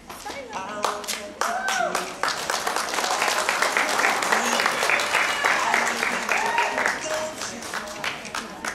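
Audience clapping, with voices calling out over it, building about a second in and holding until near the end.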